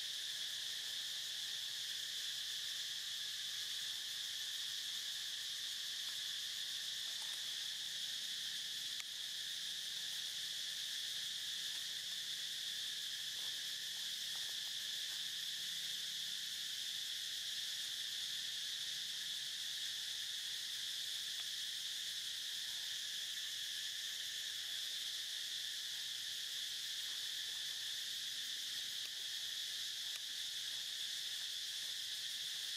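A steady, high-pitched insect chorus, a continuous drone that holds unchanged throughout.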